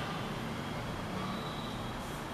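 Steady background noise, a low hum with a faint hiss, with no distinct sounds on top of it.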